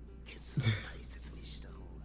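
Quiet character speech from the anime soundtrack, with soft background music. A short louder vocal sound comes about half a second in, over a steady low hum.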